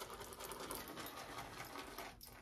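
Synthetic shaving brush swirled rapidly in a ceramic scuttle, whipping up shave soap lather: a fast, faint, steady swishing.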